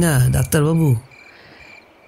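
Crickets chirping in short, evenly spaced pulses, about three a second, as a night-time background effect. A man's voice speaks over them for about the first second, and the chirping then carries on alone.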